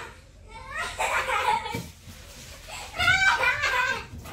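A young girl laughing, in two spells: one about a second in and another near the end.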